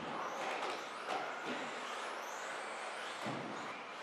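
Electric 2WD RC buggies racing on an indoor carpet track: a steady mix of faint motor whine and tyre noise carrying in a reverberant hall, with a couple of light knocks from cars hitting the jumps or boards.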